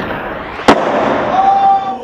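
Skateboard landing at the bottom of a concrete stair set: one loud, sharp slap of deck and wheels hitting the ground about two-thirds of a second in, followed by the wheels rolling on smooth concrete.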